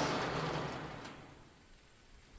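A wooden 1-by-2 perch being slid through the openings of welded cage wire: a scraping rustle that fades away over about a second and a half, with a faint tick about a second in.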